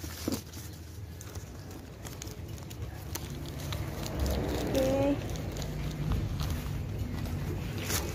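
A black plastic bag rustling and crinkling as groceries are handled and packed into it, with scattered light clicks over a low background rumble. A short voice-like sound comes about five seconds in.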